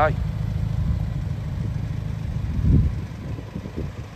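BMW M135i's turbocharged four-cylinder engine idling with a steady low hum, and a brief louder low rumble near three seconds in.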